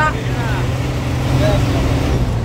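Intercity coach's diesel engine droning steadily, heard from inside the cabin while cruising on the highway: a steady low hum with road noise.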